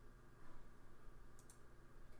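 Near silence with a steady low room hum, and a couple of faint computer mouse clicks about one and a half seconds in.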